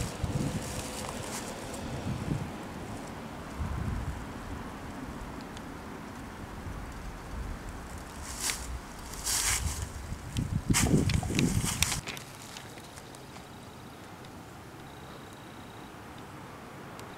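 Footsteps crunching through dry fallen leaves, with a few louder crunches about eight to twelve seconds in, over wind rumbling on the microphone. After that it goes quieter, to steady outdoor background.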